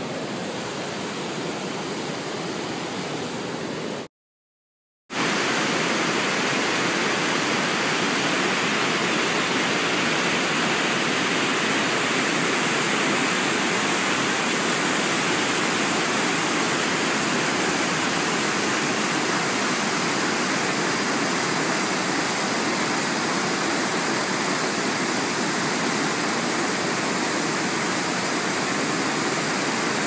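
Steady rushing of a whitewater cascade on a mountain river, heard close. A fainter rush opens it, then the sound drops out completely for about a second and comes back louder.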